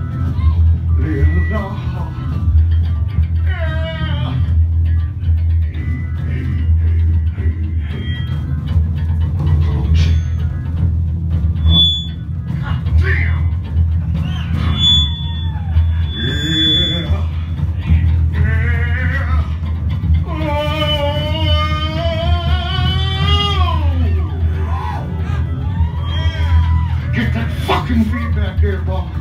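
Live punk rock band playing loudly in a small club: bass guitar, drums and electric guitar, with a voice shouting or singing over them in long wavering notes about two-thirds of the way through.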